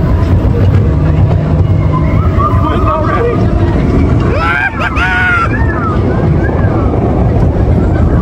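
Expedition Everest roller coaster train rolling along its track with a steady low rumble and wind on the microphone. Voices call out briefly about four to five seconds in.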